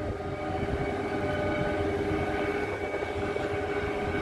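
Shipboard machinery running steadily during cargo discharge: a low rumble with several steady whining tones over it.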